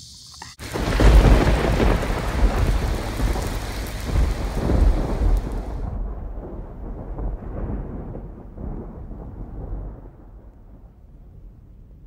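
Cinematic thunder-like rumble sound effect for a logo reveal: a deep boom about half a second in that rolls on and slowly dies away, its hiss cut off sharply midway.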